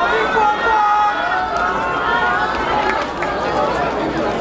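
A crowd's overlapping voices: many people talking at once, with no single speaker standing out.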